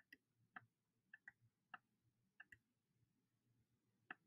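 Faint computer mouse clicks, about eight, irregularly spaced and several in quick press-and-release pairs, as pen-tool anchor points are placed on a drawing.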